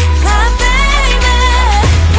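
K-pop girl-group song: a female sung vocal line gliding in pitch over a heavy, steady bass beat.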